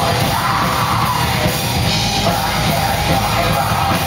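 Heavy rock band playing live: distorted electric guitars, bass and drums, loud and without a break, with a yelled vocal over them.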